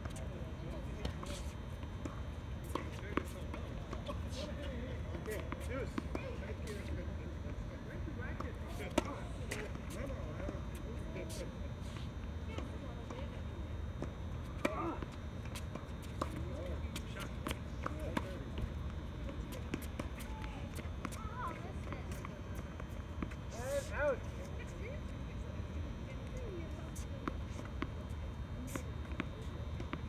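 Tennis balls struck by rackets and bouncing on a hard court during a doubles rally, sharp knocks scattered irregularly through. Players' voices call out now and then over a steady low hum.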